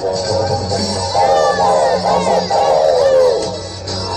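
Didgeridoo playing a steady low drone in a driving dance rhythm. From about a second in, higher bending tones ride over the drone until a little after three seconds.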